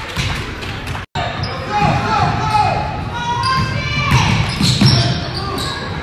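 Sounds of a basketball game in a gym: a basketball bouncing on the hardwood court and indistinct players' voices, echoing in the large hall. The sound cuts out for an instant about a second in.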